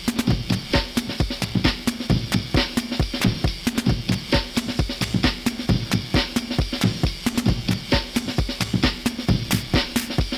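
Electronic drum pattern with kick thumps and quick clicking hits several times a second over a steady low drone, played on a modular synthesizer rig with a drum loop from an ISD1760 chip sample player.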